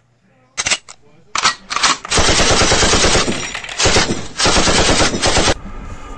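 Machine-gun fire sound effect: a few single shots, then a long burst of rapid automatic fire starting about two seconds in and lasting about three and a half seconds, with two short breaks.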